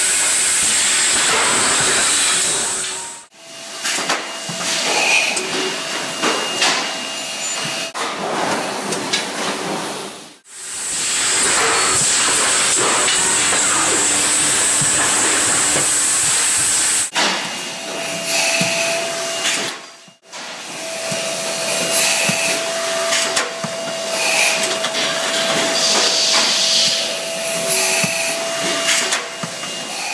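GN 3021C thermoforming machine running: stretches of steady air hiss alternate with stretches of irregular mechanical clicks and knocks from the cycling forming and trimming stations. The sound breaks off abruptly several times where clips are cut together.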